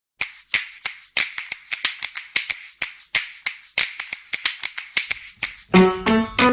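A quick, uneven series of sharp clicks, about four a second, each with a brief hiss after it. Just before the end, keyboard music with a plucky melody comes in, louder than the clicks.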